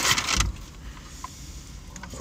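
Crinkling and rustling of fast-food packaging, stopping about half a second in with a soft thump. After that there is only the low, steady hum of the car cabin.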